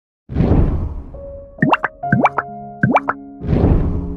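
Intro music jingle: a swelling whoosh, then three quick rising plop sound effects over held notes, then a second whoosh leading into soft sustained music.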